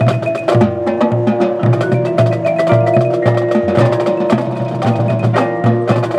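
Marching band playing: brass holding chords over a drumline and mallet percussion striking a quick, steady beat.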